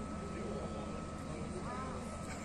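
Steady low outdoor hum with a thin, steady high tone and faint, distant voices.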